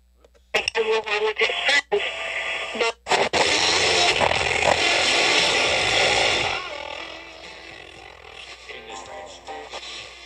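Zenith R99 boombox's speakers playing music and speech, cutting in and out in short bursts for the first few seconds as its controls are worked. It then runs loud for about three seconds and drops to a softer level of music as the volume is turned down.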